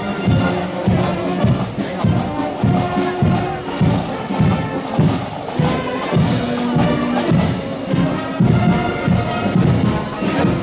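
Marching band playing a march, with a steady drum beat about twice a second under held melody tones.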